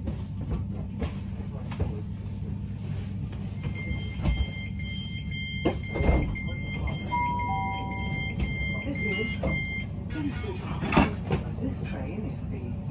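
Bombardier Class 387 Electrostar electric multiple unit standing at a platform, its onboard equipment humming steadily. About four seconds in, a high two-tone beep starts repeating about twice a second for some six seconds, typical of the door-closing warning. A few knocks sound during it, the loudest about six seconds in.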